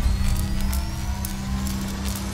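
Sound effects of an animated logo intro: a rising synthetic whir over a steady low hum, with light electric crackles.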